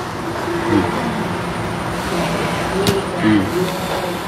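Brief, low voice fragments over a steady background noise, with a single sharp click about three seconds in.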